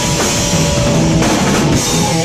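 Live punk-metal band playing loud: electric guitar and drum kit, with drum hits cutting through about a second in and again near the end.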